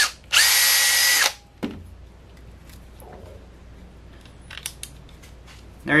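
Cordless drill spinning a countersink bit into a Lexan plate, a steady whine for about a second near the start that then stops, with a few faint handling clicks afterward.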